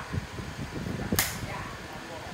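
A single sharp crack about a second in, over low murmur of voices.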